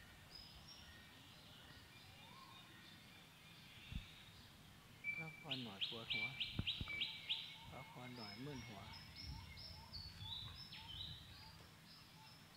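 Quiet birdsong among trees. About five seconds in there is a quick run of about six rapid repeated notes, followed by a string of high whistled notes stepping up and down in pitch.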